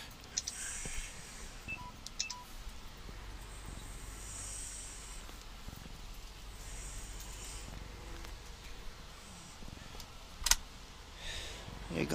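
Low, steady rumble of a Volvo 730 semi truck heard from inside the cab as it rolls slowly, with scattered clicks and short hisses. Two faint short beeps come about two seconds in, and a single sharp click about ten and a half seconds in.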